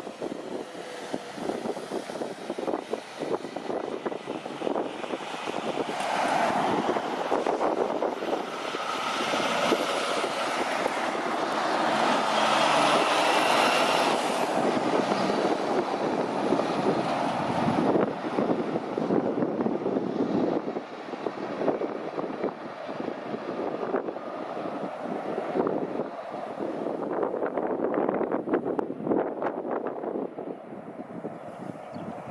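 Road train's diesel engine and tyres going past, growing louder to a peak about halfway through and then slowly fading.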